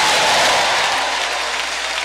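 A large congregation clapping together, the applause easing off a little after about a second.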